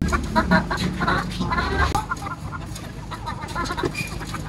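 Chickens clucking in short, irregular calls, over a steady low hum.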